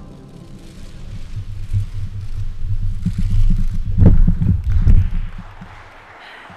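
Microphone handling noise: low rumbling and irregular thumps as the microphone is moved or adjusted, building up and loudest about four to five seconds in.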